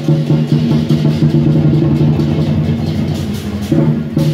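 Dragon dance percussion: a large drum beaten in a fast run of close strokes over ringing cymbals, breaking back into strong, evenly spaced beats near the end.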